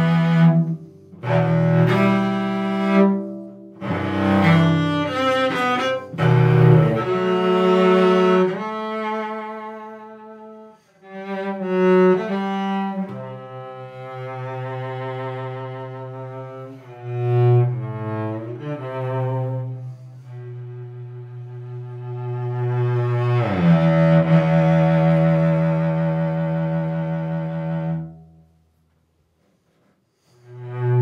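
Klaus Heffler German cello played solo with the bow: slow phrases of sustained notes, with a short break about ten seconds in. It ends on a long held low note that stops shortly before the end.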